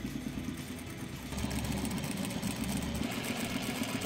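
Juki sewing machine stitching through layered fabric blocks: the motor running with a fast, even needle clatter, a little louder from about a second in.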